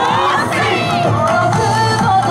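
Yosakoi dance music played loud over loudspeakers, with a group of dancers shouting and calling out along with it.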